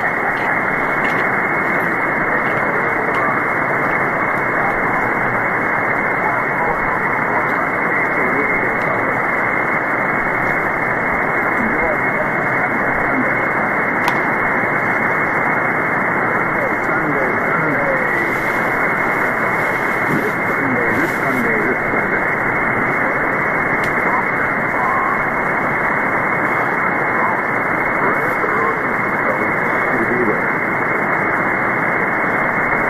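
SDRplay RSPduo receiver audio in lower-sideband mode on the 160-metre ham band: steady static hiss, cut off sharply above about 2 kHz by the sideband filter, with a weak ham operator's voice buried in the noise.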